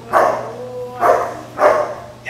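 A long-coated male German Shepherd protection dog barks three times at an agitator in a bite sleeve, about half a second to a second apart.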